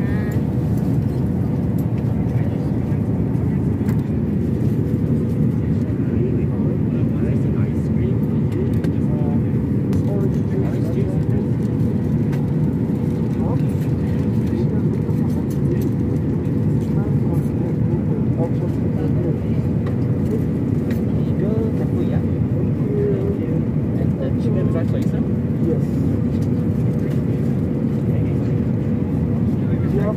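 Airliner cabin noise in cruise: a steady, loud low rumble of engines and rushing air, with a thin steady hum running through it.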